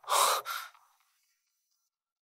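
A quick rush of air in two puffs, gone within a second.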